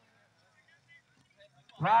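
Faint background for most of the moment. Near the end a man's loud, drawn-out shouted call begins: the kabaddi commentator stretching out a player's name, 'Abdullah'.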